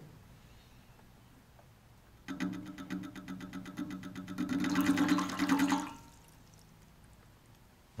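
Wave driver of a ripple tank shaking two rods in a tray of water: a buzzing rattle of rapid, even pulses, about ten a second, over a steady hum, with water splashing that grows louder. It starts about two seconds in and stops about six seconds in.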